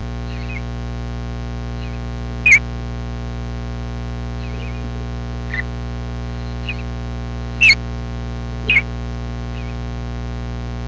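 Scattered short, high bird chirps, several seconds apart, the loudest about two and a half seconds in and twice near the end. Under them runs a steady electrical hum from the recording setup.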